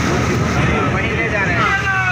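Motorboat engine running steadily under way, a low even drone under wind and water noise, with passengers' voices over it from about halfway through.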